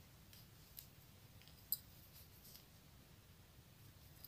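Near silence with a couple of light clicks from knitting needles as two stitches are knitted together.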